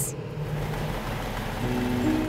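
A steady rushing noise with a low hum underneath, and a soft low tone coming in near the end.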